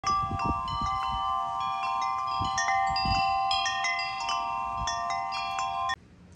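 Wind chimes ringing, struck irregularly so that several pitches overlap and sustain, cutting off suddenly just before the end.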